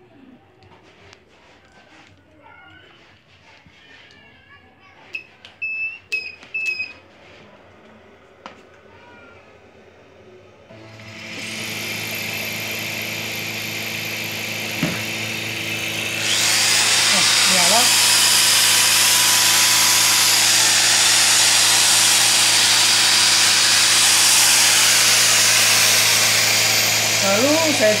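An electric motor, fed from a battery through an inverter, comes on with a steady hum about eleven seconds in after faint clicks of handling. About five seconds later it rises to a loud, steady whir as it spins the second motor used as a generator.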